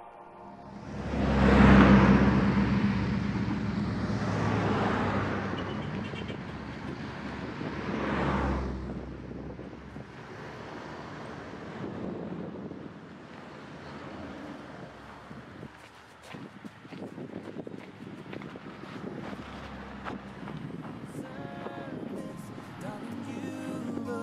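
Road vehicles passing by, the loudest swelling and fading about two seconds in and another about eight seconds in, followed by quieter outdoor noise with scattered clicks.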